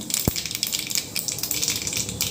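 Mustard seeds crackling and sizzling in hot oil in a small steel pot for a tadka; the crackling is the sign the oil is hot enough to add the green chillies. A single soft knock comes about a quarter second in.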